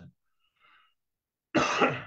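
A man clears his throat with a short, rough cough about one and a half seconds in, after a near-silent pause.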